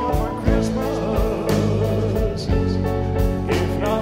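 Live rock band playing a Christmas ballad: lead singing over electric guitar, bass, keyboards and drums, with a steady drum beat.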